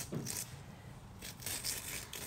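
Metal spoon scraping the seeds out of a halved cucumber: faint, soft wet scraping with a few brief strokes.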